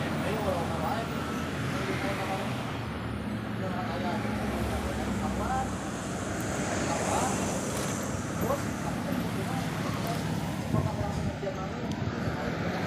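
Road traffic noise: a minivan drives past close by at the start, and engine hum from traffic continues steadily. People's voices talk over it in the background.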